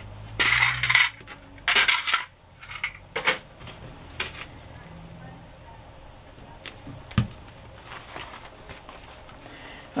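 Small metal charms clinking and rattling inside a clear plastic compartment box as it is handled, in a few short bursts over the first few seconds, followed by a few light clicks and taps.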